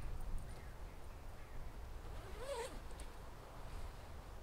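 The Czech Army sleeping bag's long diagonal zipper being pulled open, faintly, with fabric rustling. About halfway through there is one short call that rises and falls in pitch.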